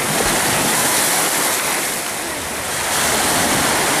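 Sea surf washing on the shore, with some wind on the microphone: a steady rush that eases a little in the middle and builds again near the end.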